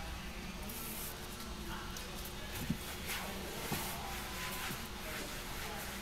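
Quiet handling sounds of a cleaning rag rubbing over a car's plastic dashboard and interior trim, with a couple of soft knocks a second apart near the middle, over a steady low hum.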